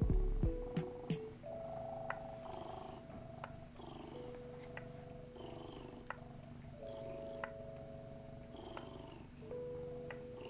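Domestic cat purring steadily close to the microphone, with soft background music of long held notes over it.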